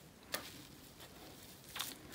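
Faint rustle of hands pressing and patting loose wool batt fibre laid over bubble wrap, with two short crinkles, one just after the start and one near the end.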